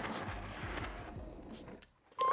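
Handheld gas torch burning with a soft, steady hiss as its flame preheats a cast-iron part, fading away near the end.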